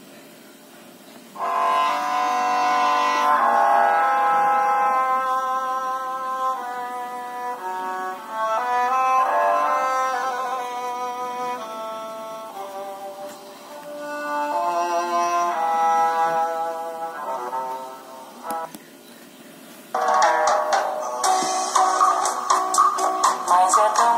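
Ringtones played through a Nokia 3110 classic's small loudspeaker: a melody of stepping notes starts about a second in and stops near the end. After a short gap a second, louder and brighter ringtone begins.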